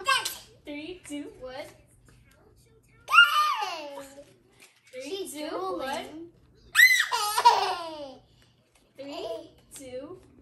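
Young children's voices: a toddler babbling and high-pitched squeals and laughter in short bursts, the loudest two squeals about three and seven seconds in, each falling in pitch.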